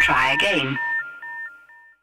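A quick run of short electronic beeps in the manner of telephone keypad tones, with a voice over them that stops before a second in. The beeps carry on alone, growing fainter, and are gone by the end.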